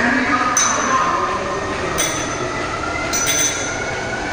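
Cable crossover machine in use: the weight-stack plates clink about every second and a half as they lift and settle, and the pulleys and cable squeal as the stack rises and falls.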